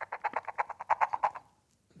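Cup string-friction noisemaker: fingers drawn along a rough string threaded through the bottom of a cup, the cup turning the friction into a fast rasping croak of about fifteen pulses a second. It stops about one and a half seconds in.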